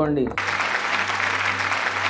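Audience applause, starting about half a second in just after a man's spoken phrase ends.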